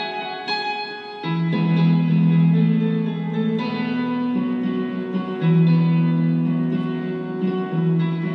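Instrumental break in a song's backing music, with no singing: a melody of short plucked-string notes over held low notes, which come in louder about a second in and shift pitch twice.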